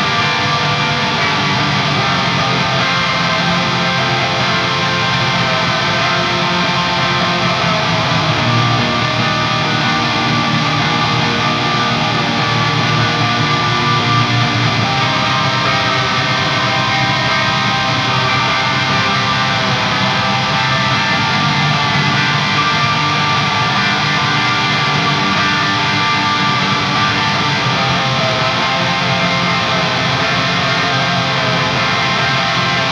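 Electric guitar, a Gibson Les Paul, played through a Guitar Rig 6 preset that runs the Van 51 amp model with a pitch-bending glide effect, delay and reverb. The notes sustain and ring into one another as a steady, continuous wash.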